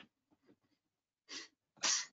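Two short, noisy bursts of breath from a person on the call, the second louder, in the second half.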